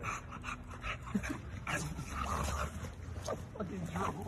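A dog making a few short whimpers and yips while play-wrestling with a person.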